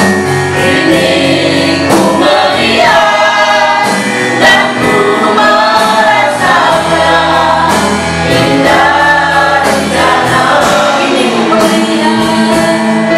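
A group of men and women singing an Indonesian worship song together, accompanied by an electronic keyboard holding sustained chords.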